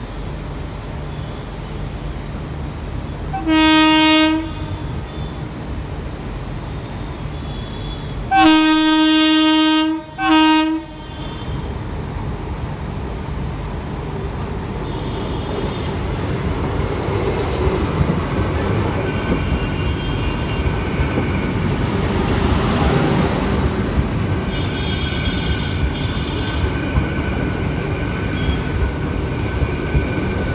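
Vande Bharat Express (Train 18) electric train sounding its horn as it approaches: a short blast, then a long blast followed quickly by a brief one. After that comes the rumble of its coaches running past close by, growing gradually louder.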